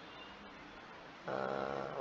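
Low room hiss, then a bit past halfway a man's steady, level-pitched hum, a drawn-out 'mmm', lasting under a second.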